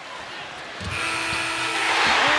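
Arena horn ending the half, a steady buzz that starts about a second in and holds for about a second. It comes just after a couple of low thumps, and crowd noise swells under it near the end.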